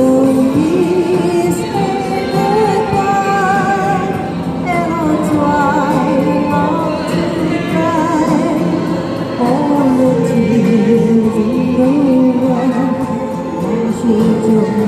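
A woman singing into a microphone over a recorded backing track, both played through a small amplified speaker; her held notes waver with vibrato.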